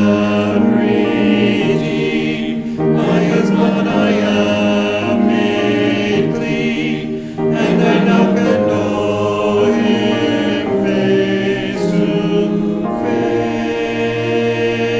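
A mixed choir of men's and women's voices sings in parts in long held phrases, with short breaks between phrases.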